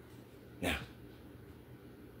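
Quiet room tone broken once, a little over half a second in, by a single short word from a man's voice.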